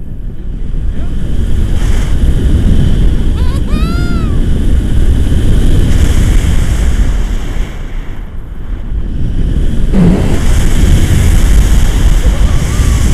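Loud wind rushing and buffeting over an action camera's microphone in paraglider flight, easing briefly past the middle and then coming back. About four seconds in, a short high sound rises and falls in pitch over the wind.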